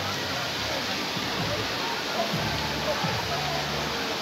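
Steady rush of running and splashing water from a water-park splash pad's fountains and jets, with faint voices of people in the background.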